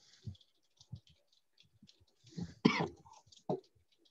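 A person coughing once over a video-call line, about two and a half seconds in, with a shorter burst just after. A few faint low thumps and clicks come earlier.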